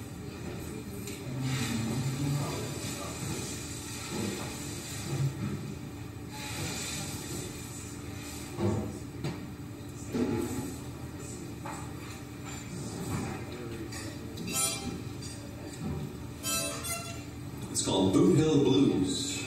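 Quiet pause between songs: a low murmur of voices in the room and a few soft knocks and brief sounds from an acoustic guitar being handled and readied, before the strumming begins.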